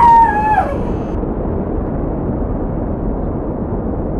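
A high-pitched puppet voice calls out briefly. From about a second in, a steady, muffled rumbling noise takes over: the rocket-launch sound effect for a prop rocket.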